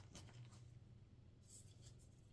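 Near silence: faint rustling of embroidered lawn fabric being handled, twice, over a low steady hum.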